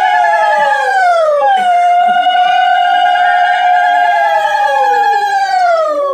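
Dog howling: two long, loud howls that each hold a steady pitch and then slide down at the end. The second begins about a second and a half in.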